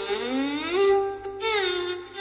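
Solo violin playing a taqsim, an unaccompanied improvisation in maqam Nahawand. The bow draws a slow upward slide into a long held note, which eases slightly downward near the end.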